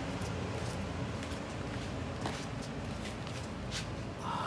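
Steady rush of two 12 V 140 mm computer fans blowing air out through PVC elbows on an ice-chest cooler, with a few faint scuffing footsteps.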